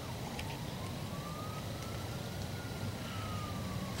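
A faint, thin tone that slowly rises and then falls in pitch over about four seconds, above a steady low rumble.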